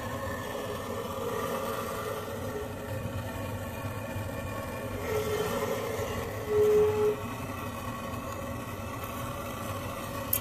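Handheld gas torch on a Worthington fuel cylinder burning steadily while it heats the burner pot of a waste-oil heater to light the diesel in it. A brief, louder steady tone comes about six and a half seconds in.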